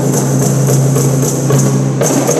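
Ensemble of rebana frame drums played by hand in a steady rhythm, about three strokes a second, over a steady low tone.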